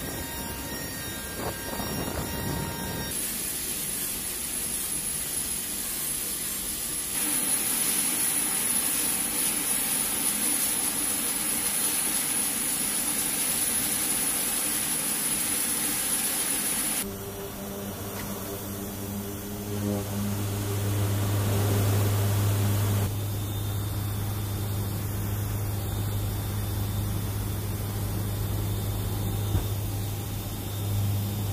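KC-130J Super Hercules turboprop engines with six-bladed propellers running. The sound jumps between steady sections: a loud high whine with a strong hiss through the middle, then a low steady propeller hum in the second half.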